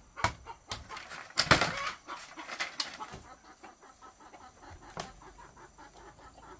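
Sharp knocks of wood on bamboo as a woven bamboo wall panel is beaten into its frame: several in the first second and a half and one more about five seconds in. In between comes a run of quick, softer clicks.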